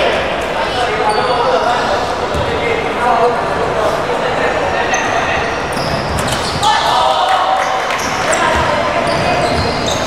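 Basketball being bounced on a wooden sports-hall floor during play, with short sneaker squeaks as players run and indistinct voices calling out, echoing in the large hall.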